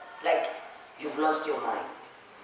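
A man's voice preaching in two short, loud, emphatic phrases that the speech recogniser did not write down.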